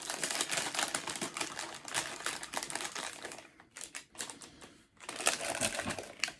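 Packaging of a mystery-figure blind box crinkling and crackling as it is opened by hand: a dense run of rapid crackles for the first three seconds or so, sparser clicks after, then another burst near the end.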